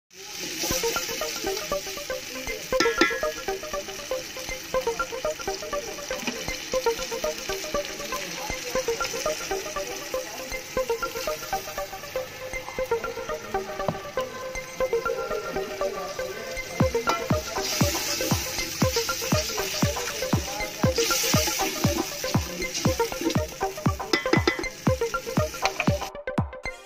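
Background music: a melody at first, joined about two-thirds of the way through by a steady electronic drum beat. Under it, a faint sizzle of tomato masala frying in the pot.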